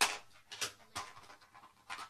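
Heavy panting: short, noisy breaths coming in quick bursts about every half second.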